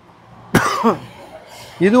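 A person coughs once, sharply, about half a second in; a man starts speaking near the end.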